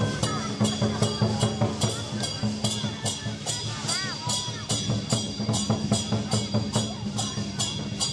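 Chinese lion dance percussion band playing a steady beat of ringing cymbal clashes, about two to three a second, over drum and gong.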